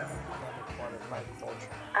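Faint mixed voices with music underneath, and a short laugh near the end.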